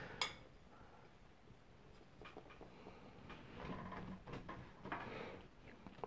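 Faint handling of painting supplies: a light click near the start, then a few soft taps and rustles as a paintbrush is loaded with acrylic paint.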